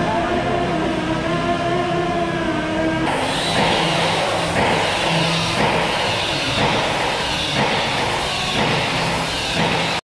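Hangar background noise: a steady mechanical hum with wavering tones, changing about three seconds in to a louder hiss that pulses about once a second.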